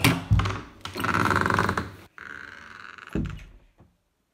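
A door being handled: a sharp knock, then a heavy thump, then two drawn-out scraping sounds and a final thump about three seconds in.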